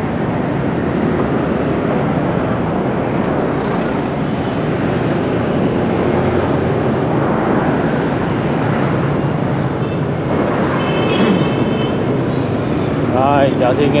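Dense street traffic: a steady wash of motorbike and car engines and tyres passing close by.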